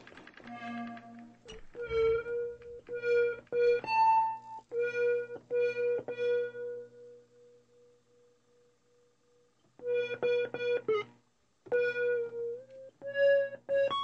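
Keyboard instrument playing a run of short notes, mostly repeated on one pitch with a few higher ones. Midway one note is held and fades out, and after a brief pause the short repeated notes resume.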